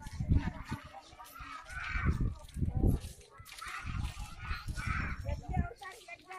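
Voices of a group of people walking in a rally, raised calls coming and going, over irregular low rumbling on the microphone.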